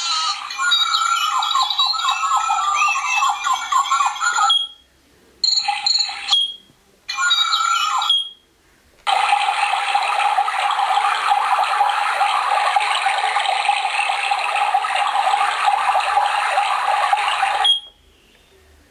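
Recorded nature sounds played through a small clock speaker, with no deep bass, switched track to track from the buttons. Chirping calls run for about four and a half seconds, then come two short snippets and, from about nine seconds in, a dense steady texture until it cuts off near the end. A short pip sounds at each cut-off.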